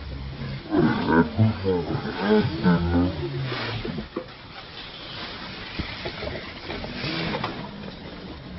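Macaque calls: a quick run of pitched, wavering grunting cries lasting about two and a half seconds, then fainter calls near the end.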